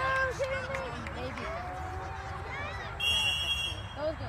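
Spectators shouting, then one short, high referee's whistle blast about three seconds in, stopping play.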